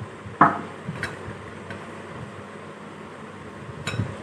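A spoon knocking against a glass mixing bowl: one sharp clink about half a second in, then a few lighter taps over a low steady background hiss.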